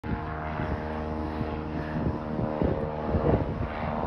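Single-engine propeller plane towing a banner, its engine droning steadily.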